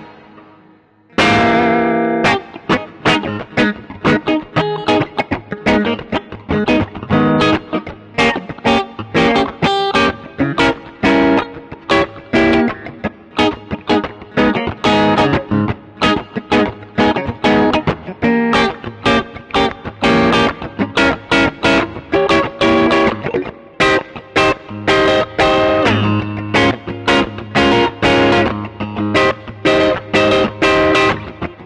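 1964 Danelectro Shorthorn Model 4021 electric guitar with lipstick pickups, played through a small amplifier. After a short pause about a second in, it plays a rapid, unbroken stream of picked single notes and riffs.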